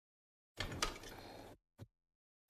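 Card stock being handled: a brief rustle and slide of paper card with one light tap, starting about half a second in.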